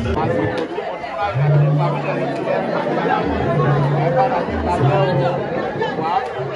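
Several people talking at once over background music, whose low held bass notes come in three times.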